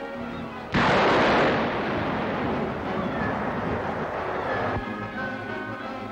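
A sudden loud burst of rushing jet-engine noise, standing for the Gorgon IV guided missile's jet engine starting up under the parent plane's wing. It breaks in about a second in, fades gradually and cuts off abruptly near the end, over orchestral newsreel music.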